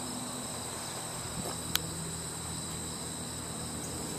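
Steady high-pitched insect trilling, with one sharp click near the middle.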